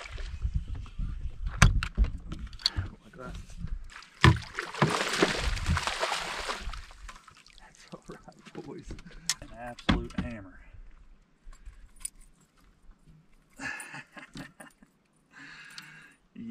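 Water splashing as a hooked largemouth bass thrashes beside a bass boat and is scooped up in a landing net, with sharp knocks and rattles against the boat. Short grunting voice sounds come in the middle.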